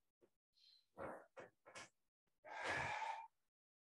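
A person breathing audibly: a few short breaths about one to two seconds in, then one long sighing exhale, the loudest sound, lasting just under a second.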